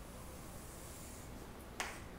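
Chalk drawn along a chalkboard in one long stroke, a faint scraping hiss, then a single sharp tap of chalk against the board near the end.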